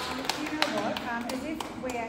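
A few people clapping: scattered, irregular sharp claps from a small crowd, with voices talking and calling out over them.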